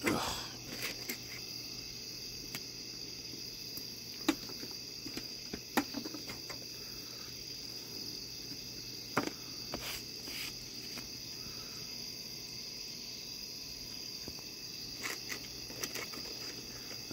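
Steady high-pitched chorus of crickets, with scattered sharp clicks and knocks as raccoons move about and feed on a plastic-sheeted wooden deck.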